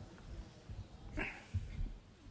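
Soft low thumps and rustling of a person shifting his seated position close to a microphone, with one brief pitched sound about a second in.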